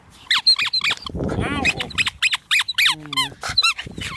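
Squeaky toy ball squeezed over and over, giving quick runs of short, high squeaks that fall in pitch. A brief low voice comes in about three seconds in.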